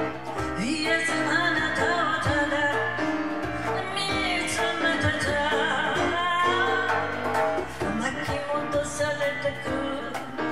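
A woman singing a slow ballad live into a microphone, her long held notes wavering with vibrato, accompanied by piano and light percussion.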